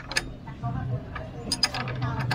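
Hand tools working on a scooter's front axle: a few irregular sharp metal clicks as the axle is fitted and tightened, over a low steady hum.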